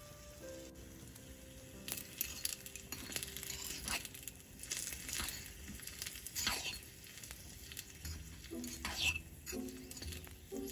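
Sliced red onions faintly sizzling as they fry in a tiny stainless-steel pot. From about two seconds in, a small metal spoon scrapes and clicks against the pot as they are stirred. Soft background music with held notes plays throughout.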